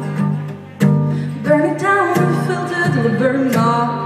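A woman singing a slow folk song live over a strummed acoustic guitar, the voice coming in about a second and a half in.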